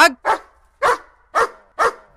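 Dog barking: four short barks about half a second apart.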